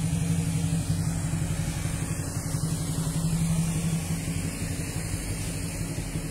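A car engine running at low revs with a steady hum as the car manoeuvres slowly, growing slightly quieter near the end.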